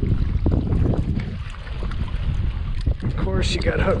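Wind buffeting the microphone in a low, uneven rumble, with a few faint knocks in the first three seconds. A voice comes in near the end.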